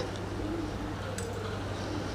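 A bird cooing softly, a few low coos about a second apart, over a steady low hum.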